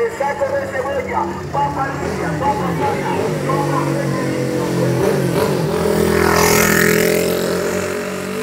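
Small mini pickup truck's engine running steadily at close range as it turns and pulls away, with voices in the street. A rushing noise swells up near the end.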